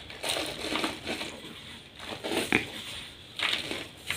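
Pieces of gym chalk crushed and crumbled in a bare hand, a run of dry crunches with a sharper one about two and a half seconds in.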